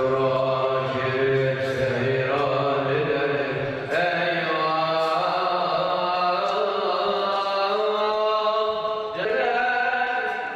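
Music with a voice singing long, held, chant-like notes. A new phrase starts about four seconds in and again near the end.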